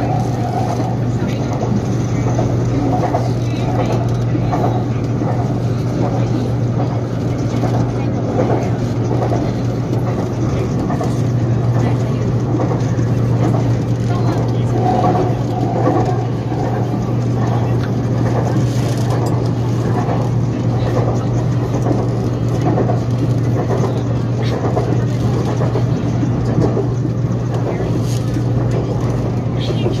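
Siemens-built BTS Skytrain EMU-A train running between stations, heard from inside the car: a steady low hum with rolling noise over it, with faint voices now and then.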